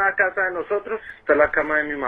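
Speech only: a man talking in Spanish.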